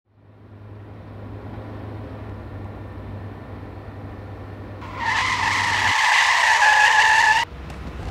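A car running with a steady low engine and road hum that fades in at the start. About five seconds in, a loud, high screech of skidding tyres cuts in and breaks off abruptly after about two and a half seconds.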